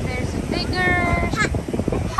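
Wind buffeting the microphone with an uneven low rumble, and a loud, high-pitched cry held on one note for about a second, starting about a quarter of the way in.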